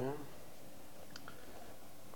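Steady low room noise with one faint click about a second in, from hands fitting raw sweet potato slices into a stainless steel pot.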